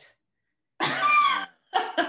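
A short, loud, breathy vocal burst from a woman, laughing, after a moment of silence, with more voiced sounds starting near the end.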